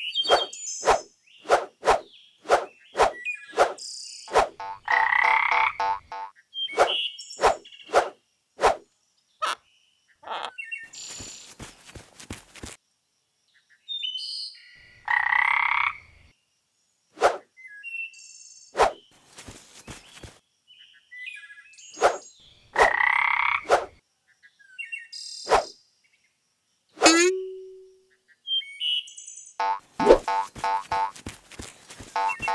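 Cartoon sound effects for a clay frog: three longer frog croaks, set among many quick, sharp clicks that come thick and fast at first, then scattered. A quick falling sweep ends in a short low tone near the end.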